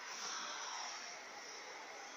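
Faint steady hiss of background noise, a little louder in the first second and then easing off.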